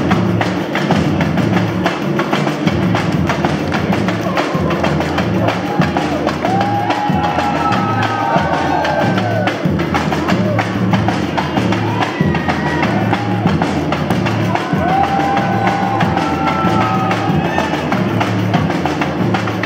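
Samba music with dense, driving percussion and a steady low drumbeat; voices singing or calling over it from about six seconds in.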